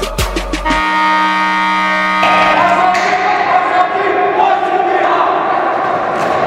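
The end of a hip-hop song: the drum beat stops about a second in on a held synth chord, which gives way a little past two seconds to a group of voices shouting and cheering together like a team chant.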